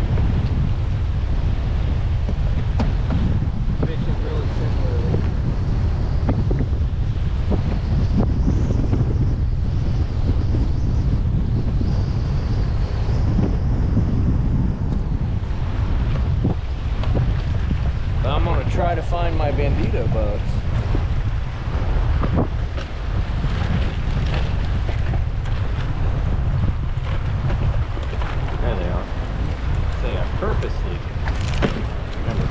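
Strong wind buffeting the camera microphone, a steady low rumble throughout, with choppy wind-driven waves slapping around the kayak.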